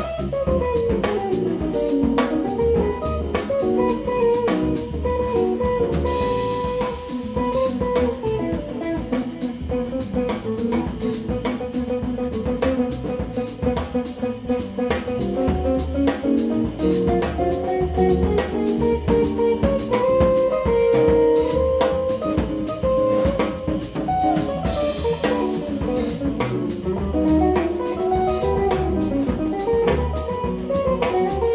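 Live jazz electric guitar solo, single-note lines with a fast descending run at the start, over walking upright double bass and a drum kit.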